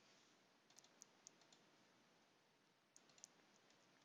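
Near silence, with a few faint computer mouse clicks: one cluster about a second in and another about three seconds in.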